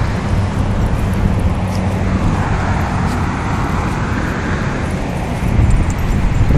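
Steady low outdoor rumble, with a wider hiss that swells and then fades between about two and five seconds in.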